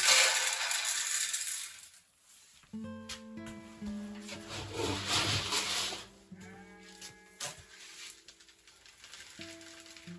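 Grain being scooped from a galvanized bin and poured into a container, two rushing pours, one right at the start and one about four to six seconds in. Background music comes in about three seconds in.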